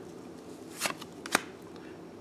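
Magic: The Gathering trading cards handled in a pack stack: two short, crisp card slides about half a second apart as one card is moved off the front to reveal the next.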